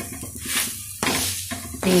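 Gram-flour batter sizzling on an iron tawa while a spatula scrapes and presses the cooking sheet against the pan; a sharper scrape comes in about halfway.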